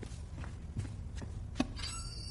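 A few soft, sharp taps about every half second, the clearest one near the end, over faint low room hum.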